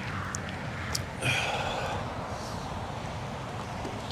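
Steady rush of wind and road noise on a body-worn microphone while riding an electric unicycle, with a couple of faint clicks and a short breathy rush about a second in.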